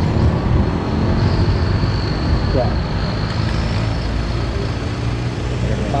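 Steady rumble of road traffic passing close by.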